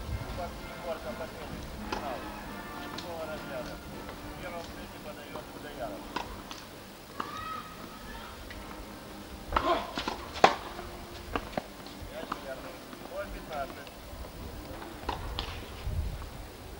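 Outdoor background of indistinct distant voices and short, chirp-like pitched sounds, with a quick cluster of sharp knocks about ten seconds in.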